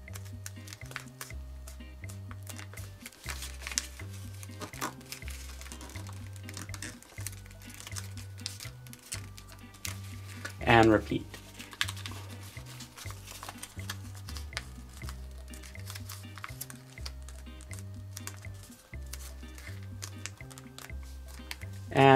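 Origami paper crinkling and rustling as it is folded and squashed by hand, over background music with a low bass line. A brief voice sound about halfway through is the loudest moment.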